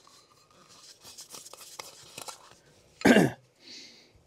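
A small aluminium tin's lid being taken off, with faint light clicks and scrapes of metal for about two seconds. About three seconds in comes a brief loud throat sound from the man, like a cough.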